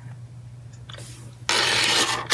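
A low steady hum, then about one and a half seconds in a sudden, loud and steady rubbing or rustling noise.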